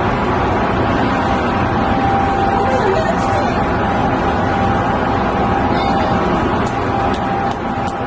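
Steady city street noise: a continuous traffic rumble with faint voices under it and a thin held tone, with no sudden sounds.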